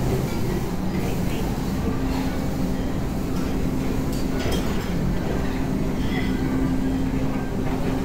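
Busy buffet restaurant background: a steady low rumble and hum, with distant voices and a few light clicks of utensils.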